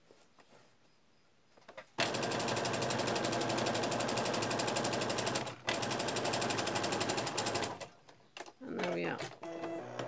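Domestic electric sewing machine stitching a zip seam at speed: it starts about two seconds in, runs for nearly six seconds with a brief stop partway, then stops.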